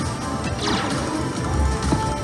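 Ultimate Fire Link slot machine sounds during its free-spin bonus: game music with a falling swoosh effect about half a second in as a spin starts, then a heavy low hit near the end as the reels spin.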